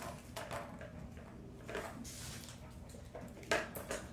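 Kittens at play on a hardwood floor: scattered light knocks, taps and scuffles of small paws and plastic toys, the loudest knock about three and a half seconds in.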